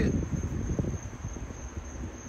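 Insects trilling steadily on one thin high tone, over a low, uneven rumble.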